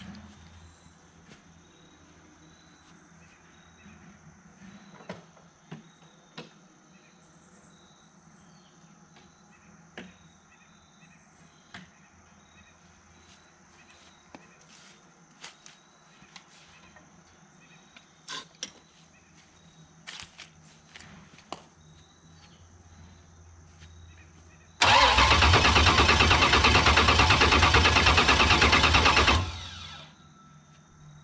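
Starter cranking a supercharged, mechanically fuel-injected V8 with open headers: a loud, steady churn that starts abruptly about 25 seconds in, lasts four to five seconds and cuts off sharply without the engine catching. This is a first start attempt with the fuel turned down on the barrel valve. Before it there are only faint clicks and footsteps.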